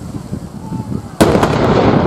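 A field gun firing a single blank round about a second in: a sharp bang followed by a long rumble that fades slowly.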